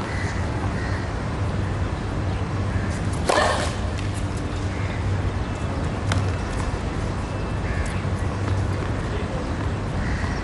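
Outdoor tennis court ambience between points: a steady low hum, with a single short, loud, harsh call about three seconds in and a sharp tap about six seconds in.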